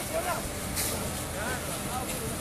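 Snatches of people's voices over a steady noisy background, with a brief hiss just under a second in.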